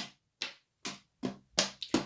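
Wooden draughts pieces knocking on a wooden board as they are moved and taken off during an exchange: several short, sharp clicks in quick succession with short gaps between.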